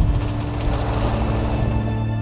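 Background music of long held notes over a steady rush of wind and boat noise.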